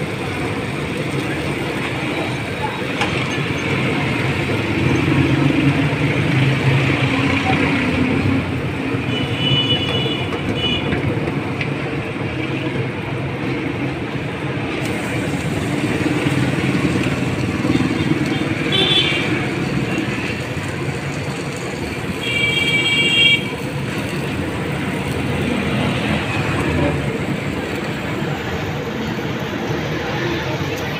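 Roadside street noise: a steady hum of traffic under background chatter, with a few short, high vehicle horn toots, the longest about three-quarters of the way in.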